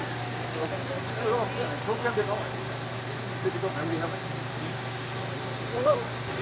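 Faint voices of other people talking in the background, over a steady low mechanical hum.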